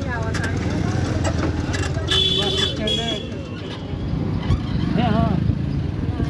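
Busy market street ambience: people talking in the background over a steady rumble of vehicles. A brief high beep like a vehicle horn sounds about two seconds in.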